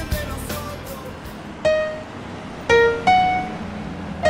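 Music: after a fading backing track, three isolated single notes on a piano-like keyboard are struck one at a time, each ringing briefly, one about halfway through and two close together near the end.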